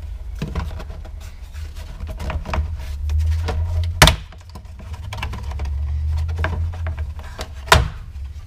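Plastic steering-column cover of a 2001–2005 Honda Civic being wrenched off by hand, with small creaks and clicks. Two loud, sharp snaps sound about halfway through and again near the end as its clips pop loose.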